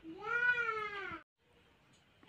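A single meow-like animal call, drawn out for just over a second, rising then falling in pitch.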